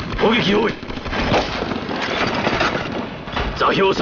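Rapid gunfire, rifle and machine-gun shots crackling steadily as a battle sound effect, with a man's shouted commands near the start and again near the end.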